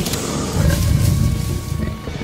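A deep, rough animal-like growl, louder from about half a second in, with music underneath.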